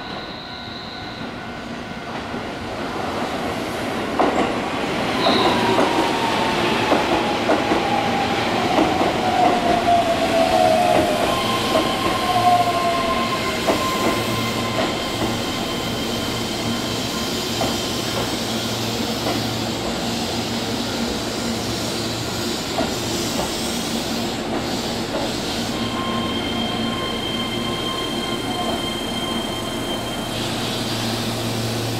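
Keihan 3000 series electric train running slowly over curved track and points, wheels clicking over the rail joints and growing louder over the first few seconds. A long falling whine follows as the train slows, and then a steady hum with a few held tones as the cars roll past.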